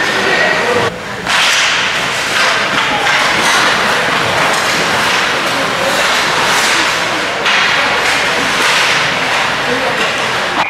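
Ice hockey play: skate blades scraping and carving the ice in repeated swishes, with sticks knocking against the puck and ice.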